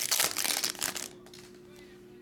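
Foil wrapper of a Panini Flux trading-card pack crinkling as it is pulled open and off the cards, a dense crackle through about the first second that then stops.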